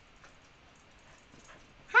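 Quiet room with a few faint clicks, then right at the end a woman's high-pitched greeting, "hi", that falls steeply in pitch.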